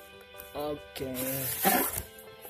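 A cardboard shipping carton's flaps pulled open: one short papery rustle near the end, louder than the speech around it, over faint background music.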